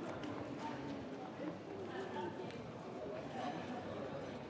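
Street ambience: indistinct voices of passers-by, with footsteps clicking on stone paving.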